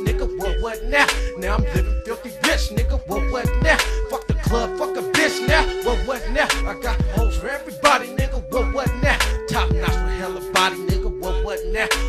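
Hip hop track: a drum beat over deep bass, with a wavering lead tone stepping between a few notes.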